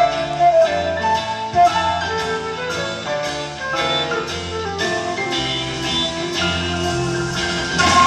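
Live rock band playing an instrumental passage: a flute carries the melody over keyboards, electric guitar and a steady drum beat.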